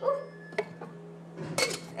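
Metal drink mixer (cocktail shaker) being handled, its cap and body clinking lightly a few times, with a sharper clink about a second and a half in.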